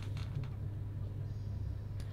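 A steady low hum, with a few faint clicks in the first half-second.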